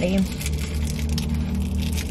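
Steady low hum of a car running while parked, heard from inside the cabin.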